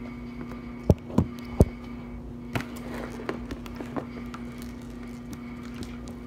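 Handling noise of slime being kneaded in a plastic tray close to the microphone: three sharp knocks about a second in, then scattered lighter taps and clicks, over a steady low hum.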